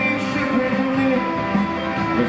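Live rock band playing loudly, with electric guitar, recorded from the audience in a concert hall.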